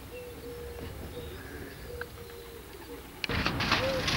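A dove cooing, a repeated phrase of a long coo set between short ones, coming about every two seconds. Near the end a loud rustling noise sets in and covers it.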